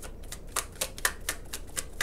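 A tarot deck being shuffled by hand, the cards clicking against each other in a quick, even series of about five clicks a second.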